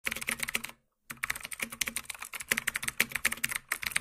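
Computer keyboard typing: a rapid run of keystroke clicks, broken by a short pause just under a second in, then typing steadily on.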